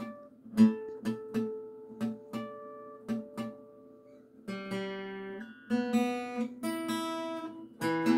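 Steel-string acoustic guitar being tuned by ear. About ten light plucked notes ring out as clean, bell-like harmonics in the first four seconds, then fuller notes are plucked and left ringing together to compare the strings, which are already in tune.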